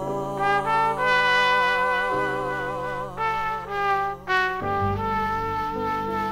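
Jazz trumpet playing a slow phrase of held notes with vibrato, over double bass and piano accompaniment in a small jazz quartet.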